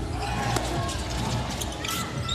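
Basketball game in play in an indoor arena: a few sharp thuds of the ball on the court over steady crowd noise.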